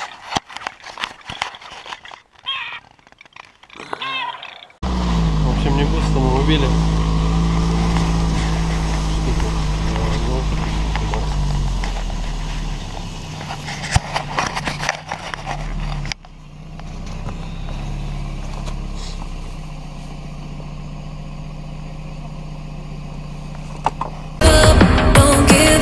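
An engine running steadily under people talking, starting abruptly about five seconds in; about two-thirds of the way through it drops to a quieter steady hum.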